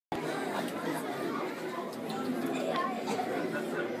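Indistinct chatter of many overlapping voices in a large room.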